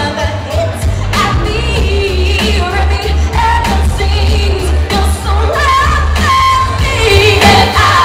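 Live pop song: a woman singing lead with vibrato, with two female backing singers, over loud amplified backing music with a heavy, steady bass.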